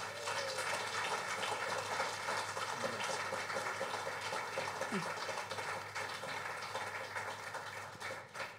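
Audience applauding steadily after a song ends, with some voices mixed in.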